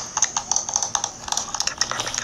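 Rapid, irregular clicking, several clicks a second, like typing on a keyboard, over a steady high-pitched hiss.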